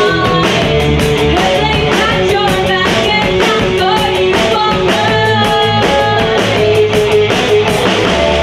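Live punk rock band playing: a woman singing lead over electric guitar, bass guitar and a steady, driving drum beat.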